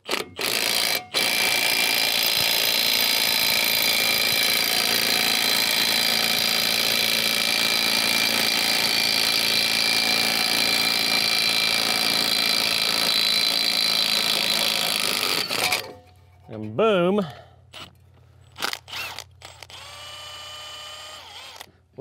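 Milwaukee M18 Compact cordless impact wrench hammering continuously on the ball joint puller's 24 mm nut for about fifteen seconds, with a short stop and restart about a second in, forcing a rust-seized ball joint out of a Subaru steering knuckle. The hammering cuts off suddenly near the end.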